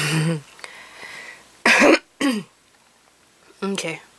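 A woman's short vocal sounds: a brief voiced sound at the start, a cough about one and a half seconds in followed by a short falling voiced sound, and a short syllable near the end.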